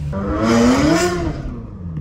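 Ferrari 360 Modena's 3.6-litre V8 revving hard under acceleration, heard from inside the cabin: the engine note climbs for about a second, then falls away as traction control kicks in and cuts the power.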